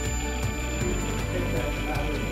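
Background music playing over an antique shop's sound system.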